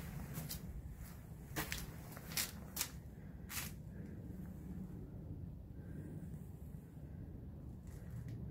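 A person walking with a handheld phone camera: about five short scuffs and clicks from footsteps and handling in the first four seconds, over a low steady background rumble.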